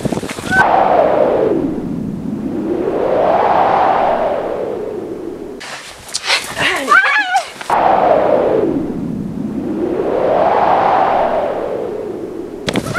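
Looped title-sequence sound effect: a long whoosh of noise that sweeps down in pitch and back up over about five seconds, heard twice, with a short burst of high, wavering cries and sharp clicks between the two.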